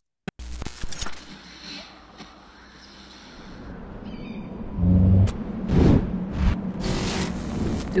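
Cinematic intro soundtrack of a music video: a deep, low drone that comes in suddenly and slowly builds. About five seconds in it breaks into heavy bass hits and sweeping whooshes.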